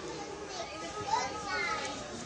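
Children's high voices chattering and calling among a crowd of people talking, with no words clear.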